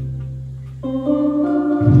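Electronic home organ playing: a held bass note and chord fade away, then a new chord enters just under a second in and a new bass note comes in near the end.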